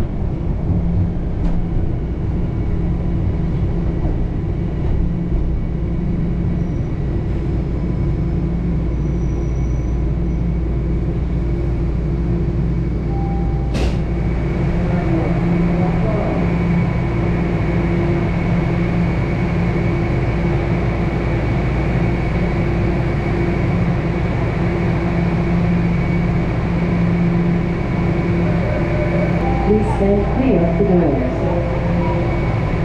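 Inside a Toronto Rocket subway car on TTC Line 1 as it pulls into a station and stands at the platform: a steady low rumble and hum from the car's running gear and ventilation. A sharp click about fourteen seconds in, after which a faint steady high tone joins the hum.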